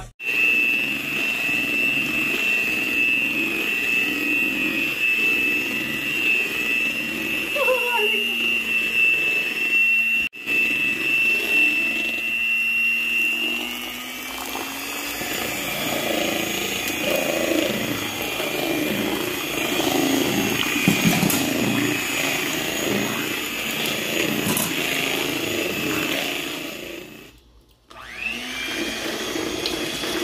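Electric hand mixer running with a steady high whine as its beaters churn through waffle batter in a bowl. Near the end it cuts out briefly, then its pitch rises as it speeds up again.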